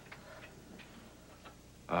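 Quiet room tone with a few faint ticks, about one every 0.7 seconds. A man's drawn-out hesitant "uh" begins right at the end.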